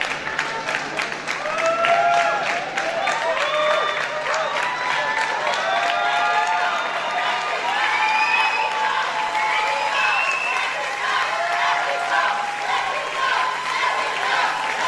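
Audience applauding, with many voices calling out and cheering over the clapping.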